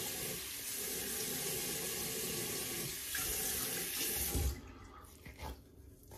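Bathroom tap running steadily into a sink, shut off about four and a half seconds in, followed by a few soft bumps.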